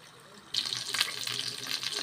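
Zucchini-and-minced-meat patties sizzling in vegetable oil in a frying pan. The crackling cuts in suddenly about half a second in, after a quiet start.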